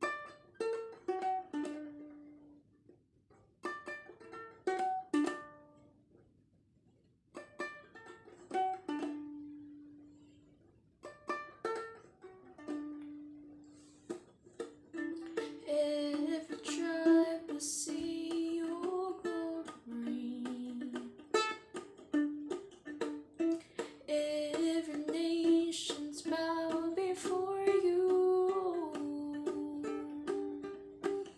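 Ukulele playing a short phrase four times with pauses between, each phrase ringing out. About halfway through, a woman starts singing over steady ukulele accompaniment.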